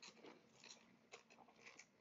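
Near silence: faint room tone with a few faint scattered clicks.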